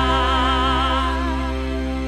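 The last held note of a live worship song. A sung note with vibrato fades out about a second in, while the band's sustained chord keeps ringing and slowly dies away.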